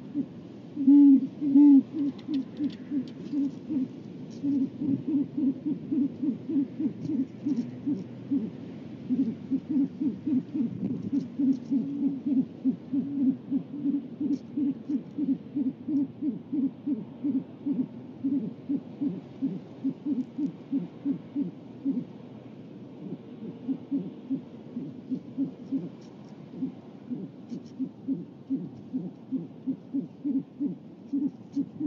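Great horned owl giving a long run of low, quick hoots, about three a second, with a short break a little past the middle.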